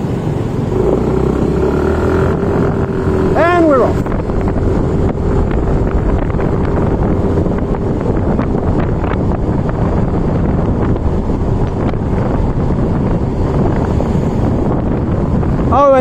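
Yamaha motor scooter running under way at road speed, its engine droning over wind rush on the microphone and the rumble of the road. About three and a half seconds in, a short pitched sound rises and falls.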